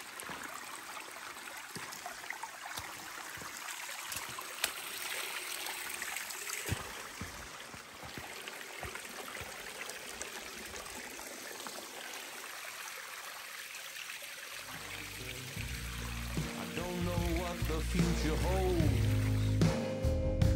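Rainwater runoff flowing as a shallow stream down a rocky hiking trail: a steady trickling rush with a few knocks. About fifteen seconds in, music fades in and grows louder.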